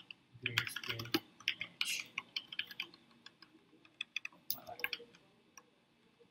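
Typing on a computer keyboard: quick, irregular key clicks, dense for the first three seconds, then scattered and thinning out toward the end.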